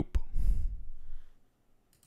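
A short click, then a person breathing out into a close microphone for about a second, and a faint click near the end.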